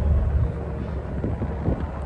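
Wind buffeting the microphone, heard as a steady low rumble.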